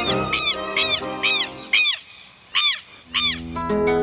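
Southern lapwing (quero-quero) calling, a series of short rising-and-falling cries, several a second at first and then more spaced out, over background music. A plucked acoustic guitar comes in about three seconds in.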